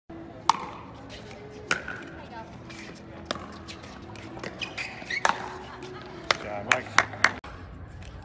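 Pickleball paddles striking the ball in a rally: sharp single pops every one to two seconds, then three quick pops in a row near the end, over faint background voices.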